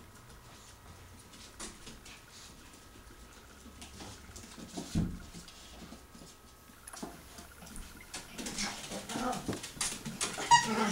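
Light clicks and scuffles of a tiny Yorkshire terrier puppy moving about on a tile floor, with one thump about halfway through. Near the end, high dog whines and yips start up and grow louder.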